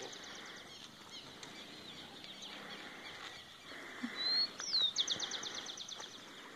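Wild birds calling: scattered high chirps, a rising whistle about four seconds in, then a rapid high trill of repeated notes near the end, the loudest sound.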